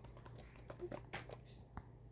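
Faint typing on a computer keyboard: an irregular quick run of key clicks.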